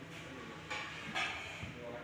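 Faint, indistinct background voices and movement, with two brief soft rustling noises about three-quarters of a second and just over a second in.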